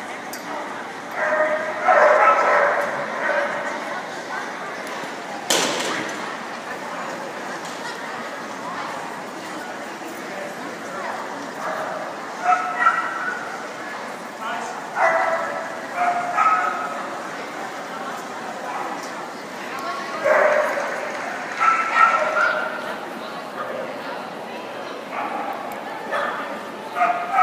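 A dog barking and yipping in short bursts, again and again, over the murmur of people talking. A single sharp knock comes about five and a half seconds in.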